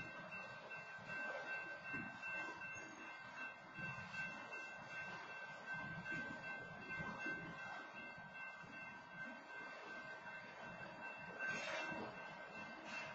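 Freight train's tank and covered hopper cars rolling past, an uneven rumble and clatter of steel wheels on the rails, picked up by a security camera's microphone. A brief sharper, louder noise comes near the end.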